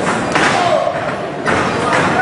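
Two heavy thuds about a second apart from wrestlers' bodies hitting the wrestling ring's canvas, over shouting voices.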